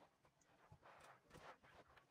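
Near silence, with a few faint soft rustles of stretch knit fabric being smoothed and folded by hand, mostly in the middle of the stretch.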